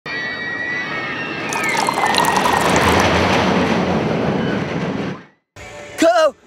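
Beer being poured into a glass: a steady rushing pour that grows louder about two seconds in and stops shortly after five seconds.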